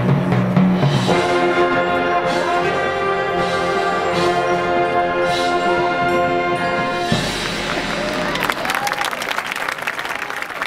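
A marching band's brass section holds a long, loud chord. About seven seconds in, the chord breaks off into a looser passage of short percussive hits.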